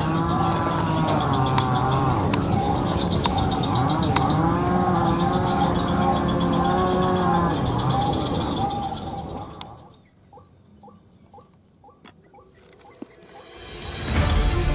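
White-breasted waterhen calls played from an electronic bird caller set beneath a decoy: long calls that bend up and down in pitch, fading out about ten seconds in, followed by a few faint ticks.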